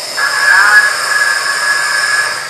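Compressed air hissing steadily into a hyperbaric recompression chamber as it is pressurized to the equivalent of 60 feet depth, starting a moment in.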